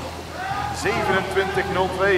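A man's voice talking, with a steady low hum underneath.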